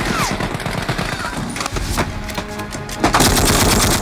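Film soundtrack of machine-gun fire in rapid bursts, with music underneath. A loud blast near the end goes with a jeep exploding.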